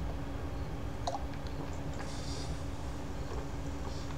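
A man chewing a bite of chili pepper, with a few faint wet mouth clicks and a short breath, over a steady low electrical hum.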